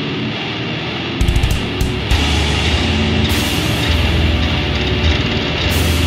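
Instrumental opening of a beatdown hardcore song: heavy distorted guitars, with drums and a deep low end coming in about a second in and cymbals joining about three seconds in.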